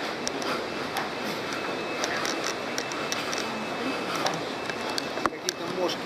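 Steady rushing noise of river water flowing beneath a catwalk, with the footsteps of people walking on it and a few sharp clicks, the loudest about five seconds in.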